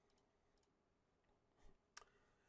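Near silence: room tone with a few faint, short clicks, the sharpest one just before the end.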